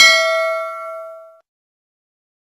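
One bell-chime ding sound effect for the notification bell being clicked on a subscribe-button animation. It is struck right at the start, rings with several tones together and fades out over about a second and a half.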